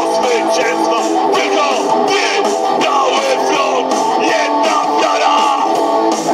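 Live rock music played through PA speakers: electric guitar with a man's shouted vocal over a steady beat.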